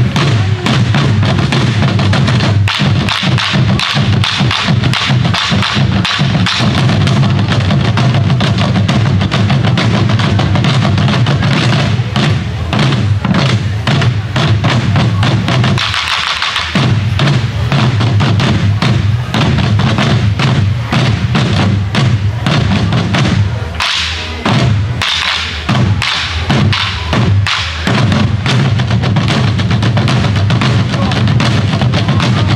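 An ensemble of Korean buk barrel drums on stands, struck with sticks together in a loud, dense, driving rhythm. There is a brief break about halfway, and a choppier stretch of spaced accented strikes near the end.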